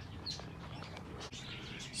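A quiet pause with a faint steady low hum and a few faint, short bird chirps.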